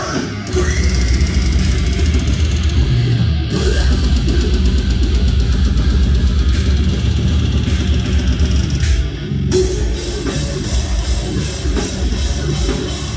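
Deathcore band playing live, with heavy distorted guitars and drums. The music changes section about three and a half seconds in and again shortly before the end.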